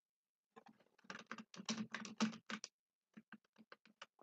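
Computer keyboard keys clicking in a quick run, followed by a few fainter clicks near the end: keystrokes copying the selected text and pasting it in several times.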